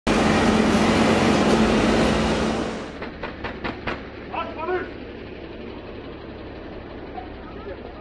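A loud, steady vehicle-engine rumble with a low hum for about three seconds, then a quick run of four sharp knocks and a brief burst of men's voices.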